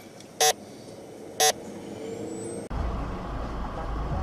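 Two short, loud beeps about a second apart, continuing a regular once-a-second series. A little under three seconds in they cut off abruptly, replaced by a steady low rumble of vehicle and road noise.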